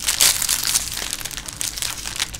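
Plastic trading-card pack wrappers crinkling as they are handled, a dense run of irregular crackles, loudest just after the start.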